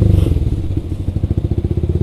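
Yamaha R15 V3's single-cylinder engine, through an aftermarket exhaust, running at low revs with an even, rapid pulse as the bike rolls slowly through water; it drops slightly in level a little after halfway.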